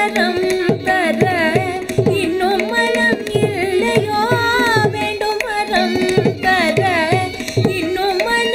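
A woman sings Carnatic vocal music in long, ornamented notes that glide and bend in pitch, accompanied by steady mridangam drum strokes.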